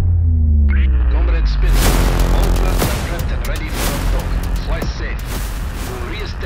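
Cinematic sound design: a deep boom at the start, then a sustained low rumble with several pitched tones sliding downward, under a film-score soundtrack.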